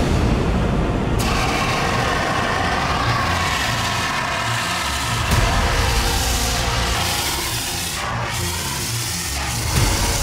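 CO2 fire extinguisher discharging in a long, steady hiss that gets brighter about a second in.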